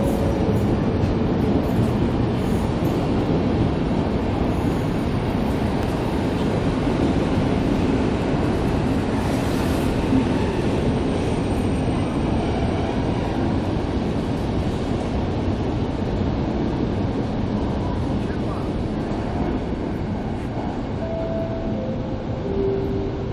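Passenger coaches of a departing Intercity train rolling past and away through an underground station, a steady rumble of wheels on track that slowly fades as the train pulls out.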